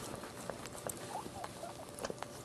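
Newborn Maltese puppy giving a few faint high squeaks in the second half. Around them are the wet clicks of the mother dog licking it clean.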